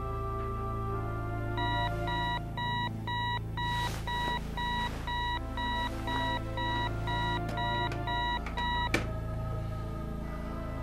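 Digital alarm clock beeping steadily, about two beeps a second, for about seven seconds. It stops with a sharp click near the end as it is shut off, over a soft music score.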